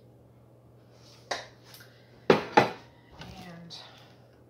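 A serving utensil clinking against a stainless saucepan and a plate while macaroni and cheese is dished out: a light click about a second in, then two sharp, loud knocks in quick succession just past the middle, followed by softer scraping.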